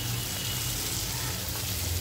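Ghee with cumin, garlic and powdered spices sizzling steadily in a stainless steel kadhai as it is stirred: a tadka frying.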